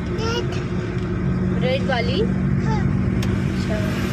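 A car driving along, heard from inside the cabin: a steady low engine and road hum.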